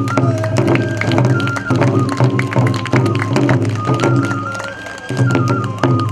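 Hōin kagura accompaniment: two large barrel drums struck with sticks in a quick, driving rhythm, under a transverse bamboo flute holding and stepping between a few high notes.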